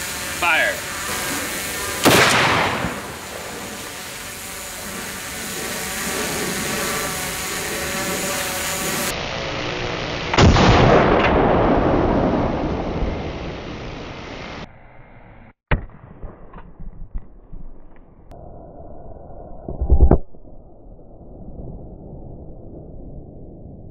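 .50 BMG rifle shot blasting a flour-packed target, heard several times over as the same shot is replayed. The first sharp shot comes about two seconds in. A second comes about ten seconds in and fades slowly over several seconds. A duller, muffled boom comes near the end.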